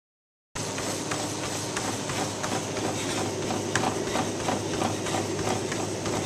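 Life Fitness treadmill running at 15% grade and 7.9 mph: a steady motor and belt hum under a runner's quick, regular footfalls, starting about half a second in.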